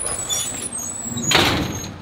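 Outdoor residential ambience: a steady low background hum with short, high bird chirps, and a brief rush of noise lasting about half a second around a second and a half in.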